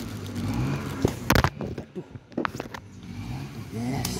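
Handling noise from objects being picked up and set down on a table: a cluster of sharp clicks and knocks about a second in, and a few more near the middle, over a steady low rumble.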